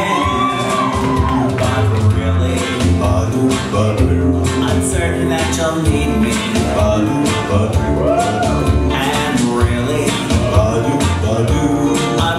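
A solo singer performing a song over instrumental accompaniment with a steady beat, holding long notes that glide in pitch.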